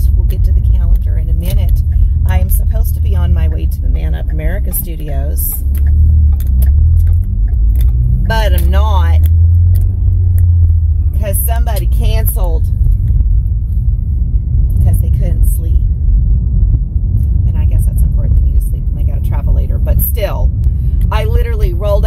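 Steady low rumble of road and engine noise inside a moving car's cabin, with a woman's voice talking over it at times.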